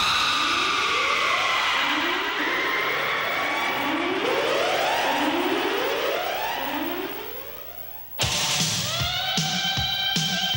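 Anime soundtrack: a siren-like sweep rising in pitch about once a second under held synthesizer tones, fading out. About eight seconds in, the end-credits music cuts in abruptly.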